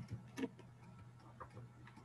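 A few faint, scattered clicks from a computer being worked, the clearest about half a second in, over a low steady hum.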